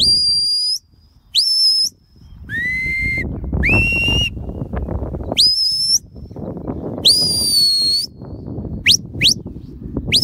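A series of whistled commands to a working sheepdog: about eight sharp high blasts, most swooping up and then holding one note, two lower ones in the middle and two quick upward chirps near the end. Wind rumbles on the microphone underneath.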